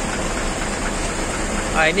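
Steady hiss of rain, with an engine idling low underneath.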